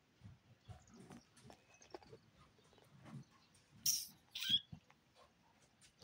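Domestic cats scuffling on a cloth window perch: faint small rustles, then two short, hissy bursts about four seconds in.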